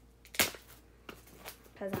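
A single sharp knock about half a second in, followed by a few faint clicks: objects such as album packaging being handled and set down.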